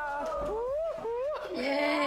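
A voice singing a playful line in exaggerated upward pitch slides, then holding one long steady note from about a second and a half in.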